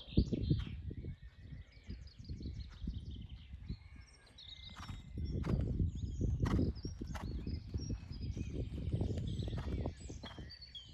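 A horse trotting on a sand arena surface, its hooves giving dull, irregular thuds over a low rumbling noise, with sharp clicks near the middle and birds singing in the background.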